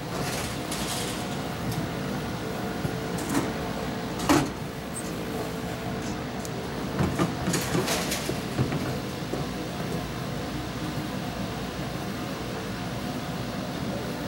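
Bowling-alley ambience: a steady machinery hum with a few constant tones, with a loud knock about four seconds in and scattered clattering around seven to eight seconds in.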